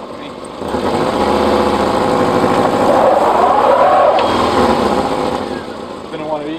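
Subaru Forester's flat-four engine revving up under load as the five-speed manual car, with its viscous-coupling centre differential, tries to pull itself forward in a traction test. The engine builds over a couple of seconds, rises and falls in pitch around the three-to-four-second mark, then eases off near the end.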